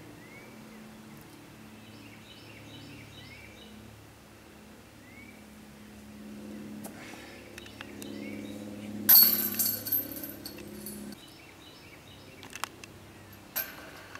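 A disc golf disc strikes the chains of a metal basket about 9 seconds in, a sudden loud metallic jingle that rings and fades over about a second. A short clink follows near the end. Birds chirp in short rising calls through the first half, over a low steady hum that cuts off abruptly.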